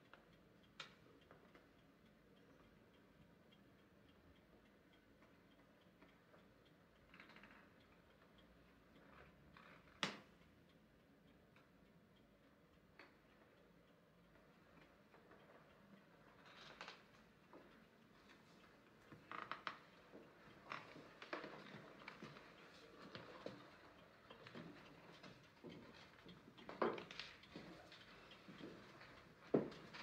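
Near silence: quiet room tone broken by a single sharp click about ten seconds in, then irregular small knocks and clicks that come more often in the second half.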